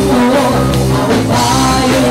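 Live band music: an upbeat Cantopop song with singing, played loud.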